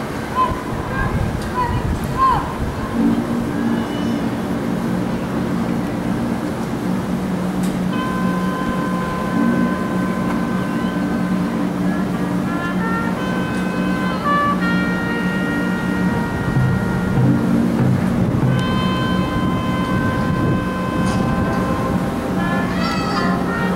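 High school marching band playing slow, held chords. Low notes enter about three seconds in, higher notes join about eight seconds in, and the chords then change in steps.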